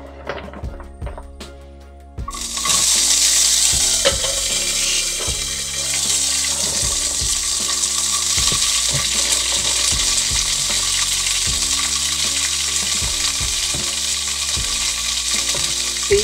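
Garlic frying in hot cooking oil in a pan, with short knocks of a utensil against it. About two seconds in, food goes into the oil and it breaks into loud, steady sizzling, loud enough to scare the cook.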